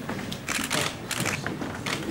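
Camera shutters firing in quick bursts of clicks, starting about half a second in.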